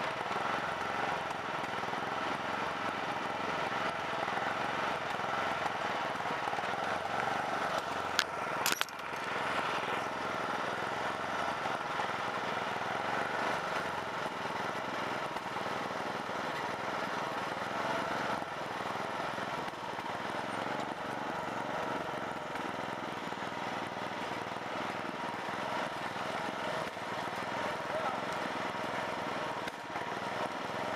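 Riding lawn mower engine running steadily while it tows a small flatbed trailer, with two sharp knocks about eight seconds in.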